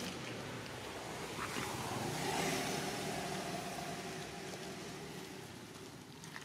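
A motor vehicle's engine passing by. Its hum swells to a peak about halfway through, then fades away.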